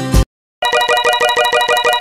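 Guitar background music cuts off a quarter second in; after a short gap, a rapid ringing chime like a phone ringtone pulses about a dozen times a second to the end: an outro sound effect.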